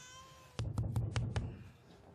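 A rapid run of about five sharp knocks or bangs with a dull low thud, starting about half a second in, after a faint thin held cry.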